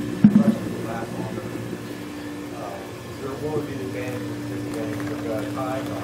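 Steady machine hum from a running Emery Thompson batch freezer, with low voices talking in the room and two or three sharp knocks at the start.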